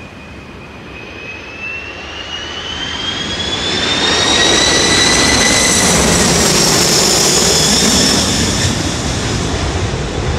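Jet roar of a DC-10 air tanker's three turbofan engines passing low overhead. It builds over the first few seconds, with a high whine climbing in pitch. It is loudest through the middle, then eases as the whine drops slightly in pitch near the end.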